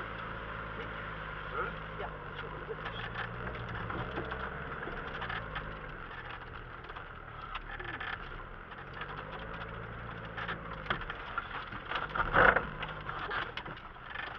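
Off-road 4x4's engine heard from inside the cab, running steadily at low revs while the vehicle crawls over rough ground, with scattered knocks and rattles and a louder bump about twelve seconds in.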